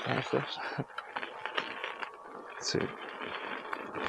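Begode electric unicycle rolling over a rough dirt path: irregular rattling clicks and a few heavier low knocks from the wheel and its suspension, over a faint steady motor whine.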